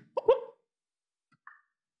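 A man's short vocal sound effect right at the start, then near quiet with a faint brief click about a second and a half in.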